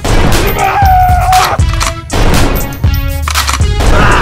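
Background music with edited-in gunshot sound effects: several sharp shots spread through the music.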